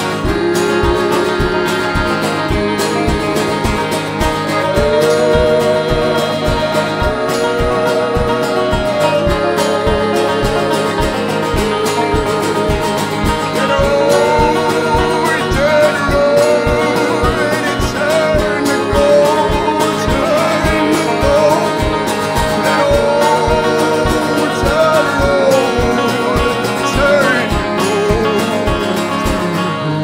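Live folk band playing: strummed acoustic guitar, banjo and accordion over a steady beat, with a male voice singing the melody.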